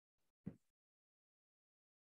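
Near silence, broken once by a brief faint sound about half a second in.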